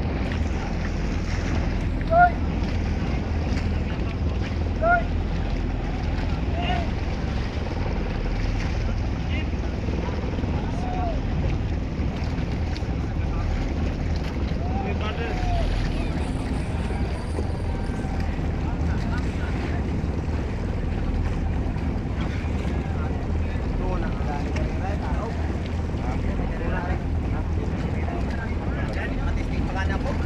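Steady low rumble on the open water around an outrigger fishing boat, with distant shouted calls from the fishermen a few times.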